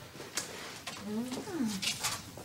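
A quiet, brief wordless murmur from a woman, rising then falling in pitch, with a faint click near the start.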